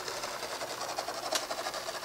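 Mesmergraph sand drawing machine running: its gear-driven mechanism makes a steady mechanical whir with a fast, fine rattle.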